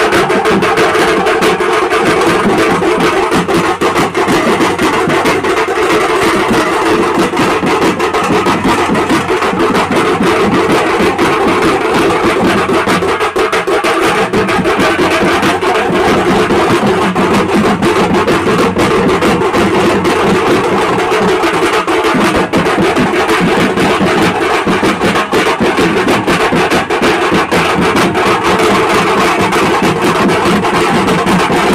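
A wedding band of large barrel drums (dhol), beaten with sticks in a fast, dense, unbroken rhythm, with a steady pitched tone sounding over the drumming.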